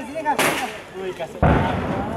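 Two explosive bangs: a sharp crack about half a second in, then a deeper, heavier boom about a second and a half in that rings on briefly.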